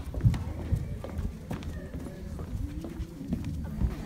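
Footsteps of people walking across a hard stage floor, low thuds about two a second, with faint voices murmuring in the background.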